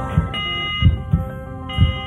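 Television theme music winding down: low heartbeat-like thumps, about four in two seconds, under held electronic tones.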